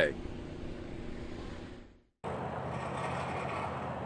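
Steady outdoor background noise with a faint low hum. It fades out about halfway, cuts to silence for a moment, then comes back as a louder, even rushing hiss.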